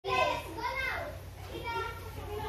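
A young child's high-pitched voice: three short bursts of chatter or calling without clear words, the first the loudest.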